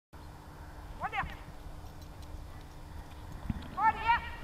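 A giant schnauzer giving short, high-pitched excited yelps in two quick bursts, about a second in and again near the end, with a soft thump just before the second burst.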